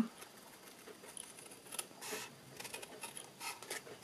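Scissors cutting cardstock: a run of short, sharp snips in the second half. Faint steady rain patter behind them.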